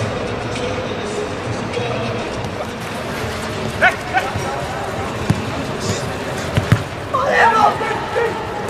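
Football being kicked on a grass pitch, a few sharp thuds in the second half, with players shouting to each other over steady background music and chatter.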